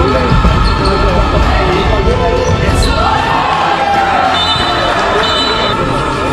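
A football bouncing and being kicked on the floor of an indoor sports hall, the thuds echoing, with players' voices and music laid over it.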